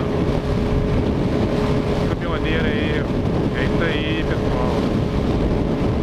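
Wind rushing over the microphone of a sport motorcycle riding at highway speed, with the engine's steady hum underneath.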